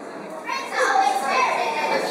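A choral speaking team of school students reciting together in unison, many young voices speaking as one. After a brief lull at the start, the voices come back in about half a second in.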